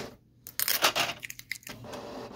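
Plastic paper cassette of a Canon Pixma TR8520 printer being pushed into the printer, with a quick run of clicks and knocks about half a second in.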